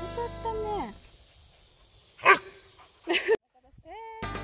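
Background music slides down and stops about a second in. Then an Akita dog gives one loud bark about two seconds in, followed by a quick double bark about a second later.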